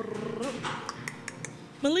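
Gym room noise: a short voice-like sound, then a few light metallic clinks against a low steady background, as the narration begins near the end.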